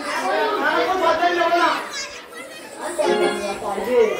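Several performers' voices talking and calling out over one another, picked up through stage microphones, with a short lull about halfway through.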